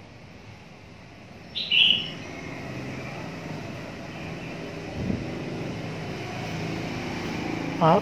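Steady low background drone of street traffic, with one short high-pitched chirp about two seconds in.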